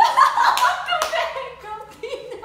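Sudden burst of laughter from a few people with hand claps, loudest in the first second and dying down toward the end.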